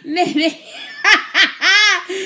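A woman laughing loudly and heartily in several bursts, the longest and loudest near the end.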